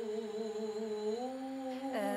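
A young woman's voice humming a slow melody: a long held note with a wavering vibrato that slides smoothly up to a higher held note a little past halfway.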